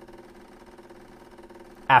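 Decent DE1 espresso machine running steadily while pulling a shot, in its pressure-decline stage: an even hum with a few constant tones.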